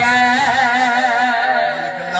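A man's voice chanting one long held note with a wavering vibrato through a PA microphone, in the sung style of a majlis zakir's recitation. It eases off slightly near the end.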